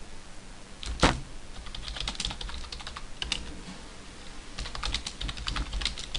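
Typing on a computer keyboard: runs of quick keystrokes, with one louder key strike about a second in.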